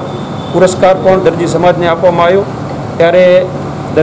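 A man speaking into interview microphones, in short phrases with a brief pause about two and a half seconds in.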